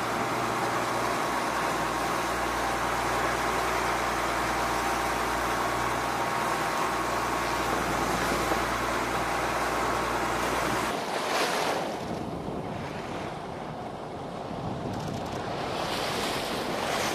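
Steady wind and sea-water noise at sea with a low steady hum underneath. About eleven seconds in it changes to a quieter, softer wash of wind and water.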